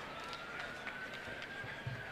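Festival crowd murmuring faintly, with one long high held note that rises a little and then falls away.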